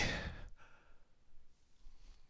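A man's breathy, sighing exhale trailing off at the end of a drawn-out "okay", fading within about half a second, then faint room tone.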